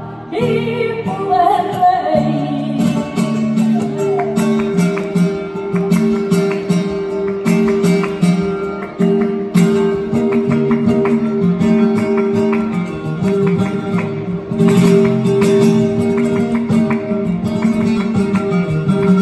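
Live flamenco: a woman sings over flamenco guitar accompaniment in the first few seconds, then the guitar plays on alone with a steady run of plucked notes.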